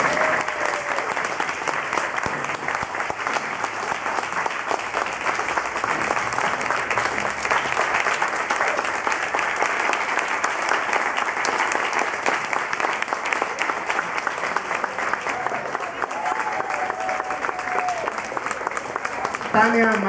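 Audience applauding: dense, steady clapping from a large group.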